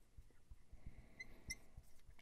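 Faint squeaks of a dry-erase marker writing on a whiteboard: two short, high squeaks a little past halfway, otherwise near silence.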